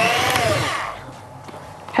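Electric hand mixer running in stiff cookie dough, its motor whining steadily, then switched off about a second in and winding down.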